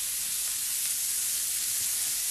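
Beyond Meat vegan burger patties frying in a skillet with sliced onions and peppers, a steady sizzle with the patties freshly flipped.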